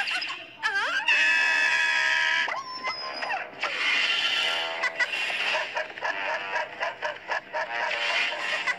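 Cartoon soundtrack: a swooping wordless cry that turns into a long held high note for about a second and a half, then a short high whistling glide, followed by lively background music and sound effects.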